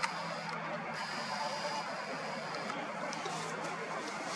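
Steady, faint outdoor background noise with a low hum and no distinct events: the ambient sound of an evening outdoors, plausibly distant city traffic.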